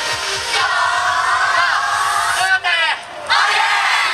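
Yosakoi dance team shouting in unison: a long held group call, a brief drop just before three seconds in, then another loud burst of shouts.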